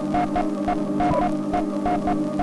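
Lo-fi dubstep groove played live on an Elektron Digitakt sampler: a sustained organ-like chord drone under a repeating short higher note, with faint regular percussion ticks.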